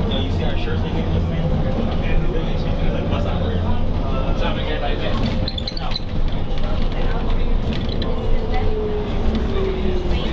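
Interior of a New Flyer D40LF transit bus underway, its Cummins ISL diesel running with a steady low rumble under road noise. A faint whine drops in pitch near the end.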